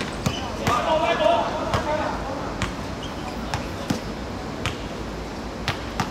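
A football being kicked and bouncing on a hard court surface, giving sharp irregular knocks, with players shouting about a second in.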